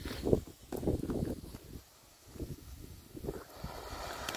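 Vulkan Happiness Fountain ground firework burning: a hiss builds over the last second or so as the fountain gets going and throws its spray of sparks, over irregular low rumbling and knocks from wind on the microphone.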